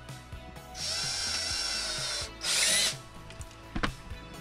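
Cordless drill motor running in two bursts, a longer one and then a shorter, louder one whose pitch bends as it spins up and down, followed by a sharp click near the end.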